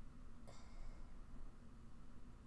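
Quiet room tone with a low steady hum and one faint tick about half a second in.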